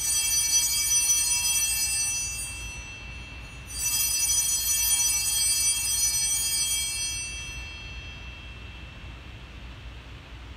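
Sanctus bells rung twice, each ring a bright, high jingle that fades over about three seconds, the second starting nearly four seconds in: the altar bells marking the consecration of the bread at the words of institution.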